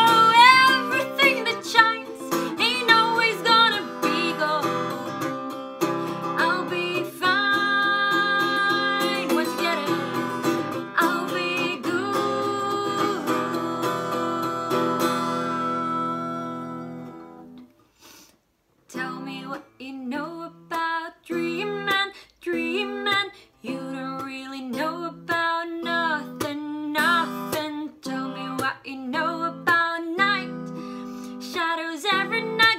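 A Fender acoustic guitar strummed with a woman's singing voice. The sound then settles into long held notes that fade to near silence about eighteen seconds in. After that the guitar comes back alone with short, rhythmic strummed chords.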